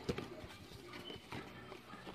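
Hands opening the flaps of a thin cardboard box of sanitary pads: a sharp click just after the start, then faint rustling and tapping of the card.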